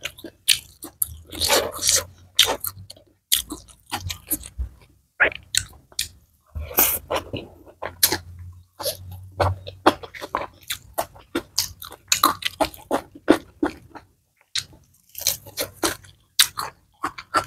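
A person chewing fried fish and fried rice eaten by hand, with many short, irregular mouth smacks and crisp crunches.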